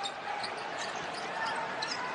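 Steady arena crowd noise during live basketball play, with a basketball bouncing on the hardwood court.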